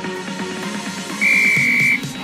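Electronic dance music, and a little over a second in, a single loud, steady high beep cuts in over it for under a second: an interval timer signalling the end of the one-minute exercise.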